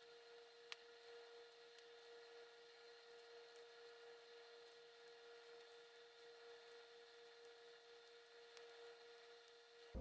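Near silence: a faint steady hum, with one faint click about a second in.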